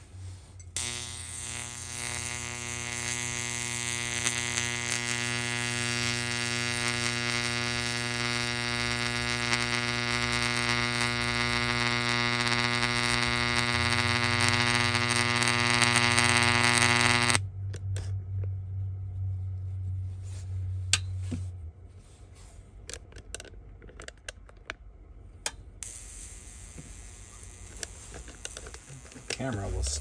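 Electric arc at the tip of a nail electrode held in a glass of water, buzzing loudly with a mains-frequency drone and growing louder, then cutting off suddenly about seventeen seconds in. A low electrical hum follows for a few seconds, then a few light clicks.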